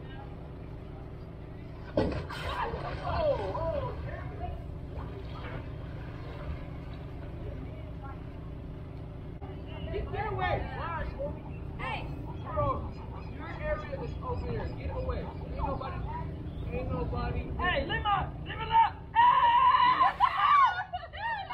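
Indistinct voices talking and calling at a distance over a steady low background rumble, the voices getting busier and louder in the last few seconds.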